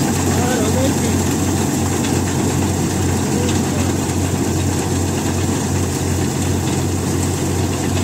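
Tractor-mounted Satnam 650 mini combine harvester running, its diesel engine and machinery giving a steady, even low drone.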